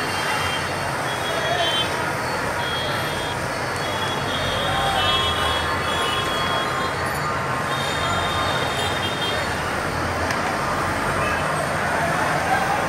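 Steady city road traffic noise, with high-pitched tones coming and going over it.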